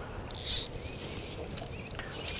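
Quiet outdoor ambience on open water, a steady low rush of light breeze, with one short hiss about half a second in.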